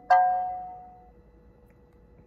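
McLaren Senna's cabin chime sounding once as the car wakes in ignition mode, a bell-like tone that fades away over about a second, the last of a series of chimes a second apart.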